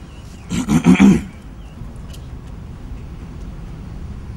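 A single loud, harsh, roar-like cry lasting under a second, starting about half a second in, over a low steady background hum.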